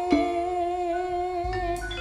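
Javanese gamelan music for ebeg: a long held note sounds on after the drumming stops, fading slowly, with a light struck note near the end.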